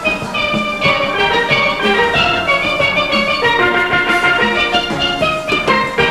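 Steel orchestra playing: many steel pans struck in quick, rhythmic runs of ringing notes.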